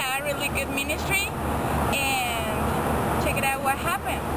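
A woman's voice talking over steady outdoor road-traffic noise.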